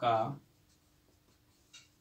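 Marker pen writing on a whiteboard, faint strokes with one short squeak of the tip near the end.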